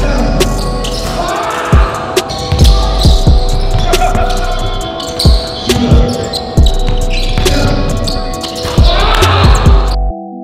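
A basketball dribbled hard on a hardwood gym floor: irregular sharp thumps, about a dozen, ringing briefly in the large hall.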